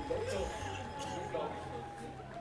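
A distant voice over a stadium public-address system, with a steady thin tone held beneath it.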